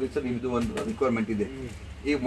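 Only speech: a man talking in conversation.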